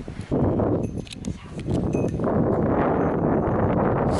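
Rustling and footsteps of people walking on a rocky, leaf-covered mountain trail, mixed with rubbing noise from the handheld camera as it moves. The noise runs continuously, dips briefly about a second in, then stays steady.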